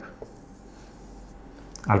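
Marker pen writing and drawing on a whiteboard: faint scratching strokes as a note is written and a box is drawn around a result. A man's voice starts again right at the end.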